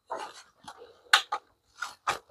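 Hands handling a digital kitchen scale with a steel platform on a tabletop: brief rubbing and several light clicks and knocks, the sharpest a little past a second in.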